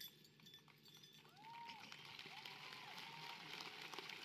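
Faint, distant crowd applause that starts about a second in and builds to a soft, steady patter of many small claps. A couple of faint whistled notes rise and fall over the top.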